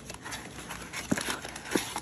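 Cardboard rustling as a paperboard trading-card box is pulled open and its stack of cards slid out, with two short sharp clicks, one about a second in and one near the end.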